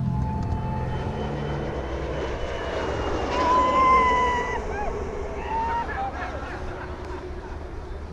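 A DFS Habicht glider swooshing past low, the rush of air swelling and falling in pitch about four seconds in, while the pilot in the open cockpit shouts a long "juhu".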